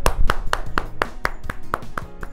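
A man clapping his hands in a steady rhythm, about four claps a second.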